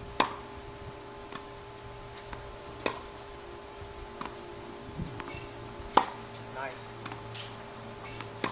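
Tennis racket strings striking the ball on groundstrokes: sharp pops, the loudest about a quarter second in and about six seconds in, with another near three seconds and fainter knocks between.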